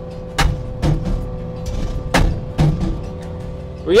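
Hammer SM40 hydraulic post driver pounding a steel fence post, over the steady hum of the loader's engine and hydraulics. Two heavy blows about two seconds apart, each followed about half a second later by a lighter knock. The post is not sinking: it has struck something hard that the operator takes for a large rock.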